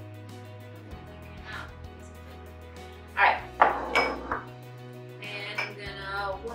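Background music, with a quick cluster of sharp knocks and clinks about three seconds in, one of them ringing briefly: a small glass salt shaker being tapped and set down on the countertop among the bowls.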